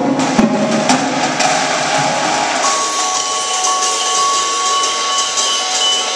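Percussion ensemble of drumline and mallet keyboards playing: sharp drum and mallet strikes in the opening second or so, then a held note over a cymbal wash from about halfway through.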